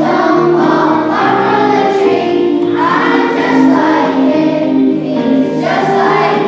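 A group of children singing together as a choir, holding long, steady notes.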